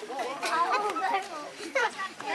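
Several people chattering at once in overlapping, unscripted conversation.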